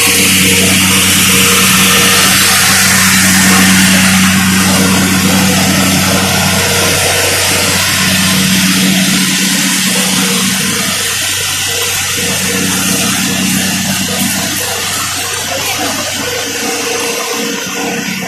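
A steady low engine hum, with a loud, even rushing noise over it; the hum fades out briefly a couple of times.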